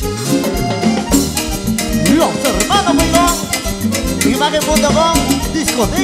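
Live Latin tropical dance band playing an instrumental passage: electric bass and congas drive a steady dance rhythm under a lead melody of sliding, gliding notes.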